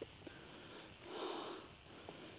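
A faint breath drawn in through the nose, about a second in and lasting about half a second.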